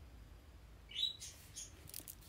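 A brief high-pitched chirp about a second in, followed by a fainter one.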